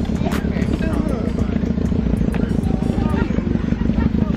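Steady low rumble of a car engine, with indistinct talking and a few light clicks over it.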